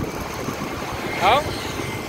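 Steady road and traffic noise, an even rush with no clear engine note, from moving along a city road beside a motor scooter.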